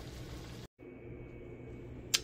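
Faint kitchen room tone with a steady low hum, cut off abruptly about two-thirds of a second in by an edit, then a quieter background with a thin steady high whine.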